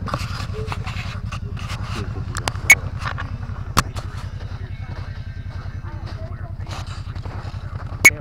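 ATV engine idling with a steady, evenly pulsing low throb. Scattered light clicks sit over it, and two sharp clicks come about a second apart roughly three seconds in.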